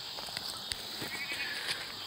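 Steady high-pitched chorus of insects chirping outdoors, with a few faint clicks and a short trill about a second in.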